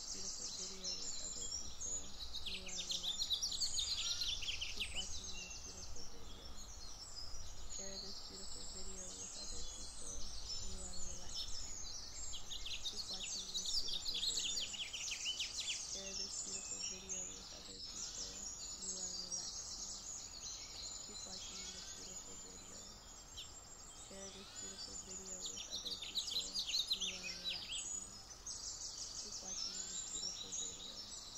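Many small songbirds singing, a dense chorus of rapid high chirps and twittering trills, over a faint low rumble.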